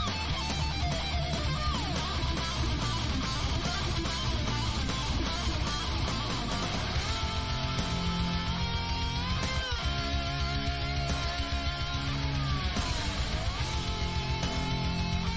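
Electric guitar solo over a full rock backing: held lead notes with vibrato, a quick slide up about two-thirds of the way through, and a bend down and back up near the end.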